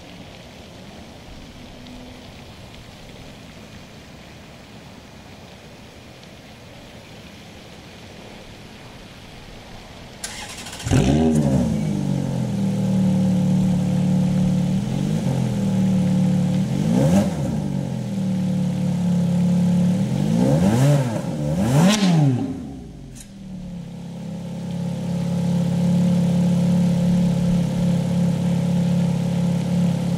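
2005 Ferrari F430's 4.3-litre V8 warm-started about ten seconds in: a brief crank and the engine catching, then four short throttle blips, the pitch rising and falling each time, before it settles into a steady idle.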